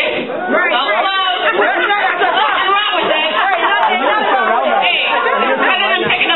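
Many voices talking over one another at once: a club audience's loud chatter and calling out.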